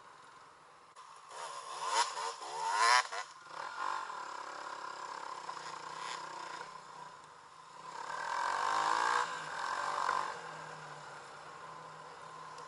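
Dirt bike engine revving up under acceleration twice, about a second in and again near eight seconds, running steadily in between.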